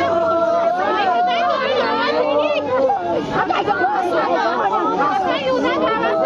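Several women crying out and lamenting at once in grief, their overlapping voices rising and falling in long, high, wavering wails over chatter.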